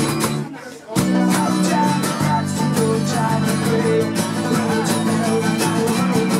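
Folk-punk band playing unplugged with strummed acoustic guitars, bass guitar and banjo. The band stops for a moment, then crashes back in together about a second in and drives on with a fast strummed rhythm.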